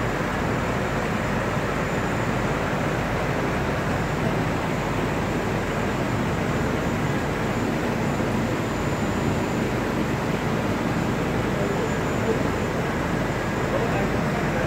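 MKS Sanjo P 25 SF label printing press running at a line speed of about 24 metres per minute: a steady, even mechanical noise with no distinct beats or changes.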